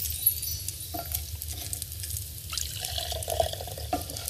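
Blended green drink being poured through a sieve into a glass, the liquid trickling and dripping, with a couple of light clicks.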